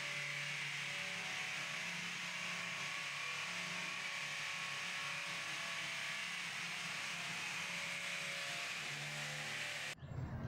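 Steady background noise: an even hiss with a low hum beneath it, unchanging throughout.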